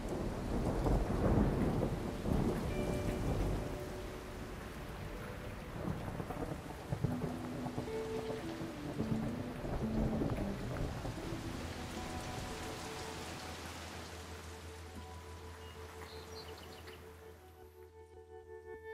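Steady rain with a long low rumble of thunder, heaviest in the first few seconds, the rain fading away toward the end. Soft sustained musical notes run faintly underneath.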